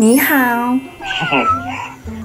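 A woman's long, sing-song greeting of 'nǐ hǎo', in a voice whose pitch dips and then rises, followed about a second in by a shorter voice.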